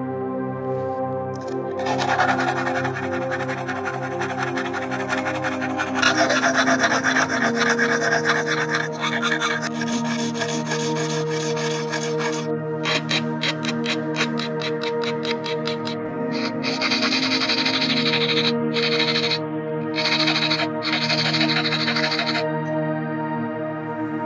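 Hand file scraping back and forth across the flattened end of a metal rod clamped in a vise, in runs of strokes starting about two seconds in, with a stretch of rapid short strokes around the middle.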